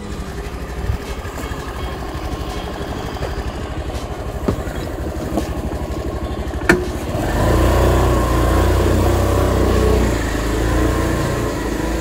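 TVS Scooty Pep+ scooter's small single-cylinder engine idling with an even pulse, with two short clicks, then running louder from about seven seconds in as the scooter pulls away.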